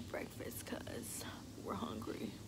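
A woman whispering close to the microphone, soft and breathy with a few hissing 's' sounds.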